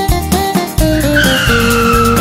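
Cartoon tyre-squeal sound effect: a high screech that starts about a second in and slides slowly down in pitch. It plays over upbeat children's music with a steady beat.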